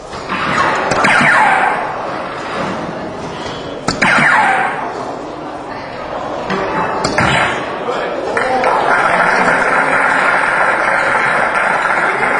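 Three soft-tip darts striking an electronic dartboard, about three seconds apart. Each hit is followed by a swell of crowd voices, and from about eight seconds in the crowd cheers steadily as the winning dart lands.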